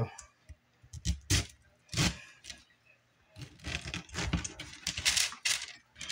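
Sharp kitchen knife cutting down through pineapple flesh beside the core, with a few separate clicks of the blade early on, then a quick run of crisp slicing strokes with the blade tapping the paper-lined cookie sheet.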